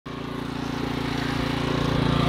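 Small engine of a walk-behind line-striping paint machine running steadily.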